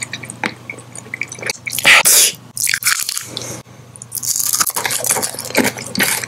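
Close-miked wet mouth sounds: a run of small lip and tongue clicks and smacks, with a louder burst about two seconds in and denser clicking in the second half.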